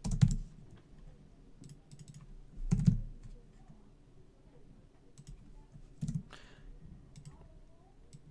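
Computer keyboard typing: scattered keystrokes with short pauses, a few of them heavier thumps.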